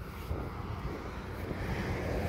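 Steady noise of congested road traffic: a low rumble of car engines and tyres from a queue of slow-moving cars, with no single vehicle standing out.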